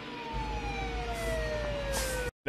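A siren on the film's soundtrack, one long tone gliding steadily down in pitch, over a low rumble that comes in shortly after it starts.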